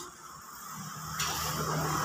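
A road vehicle approaching: a low steady hum with a hiss that grows louder from about a second in.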